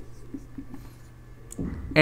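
Marker pen writing on a whiteboard: faint, soft strokes and light ticks as letters are drawn.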